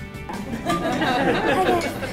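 Several diners talking at once, a mixed chatter of voices, with steady background music underneath.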